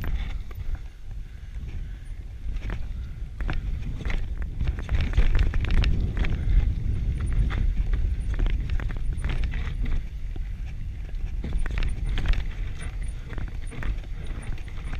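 Giant Full-E+ Pro electric mountain bike riding down a dirt singletrack: a steady low rumble from the tyres on the trail, with frequent clicks and rattles from the bike as it goes over bumps.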